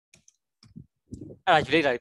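A few faint computer keyboard clicks in the first second as code is typed, followed by loud speech.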